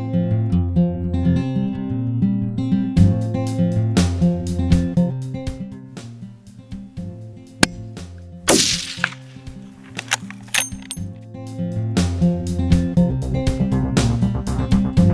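Background music with a plucked-string beat. A little past halfway a single rifle shot is heard, its report trailing off over about half a second.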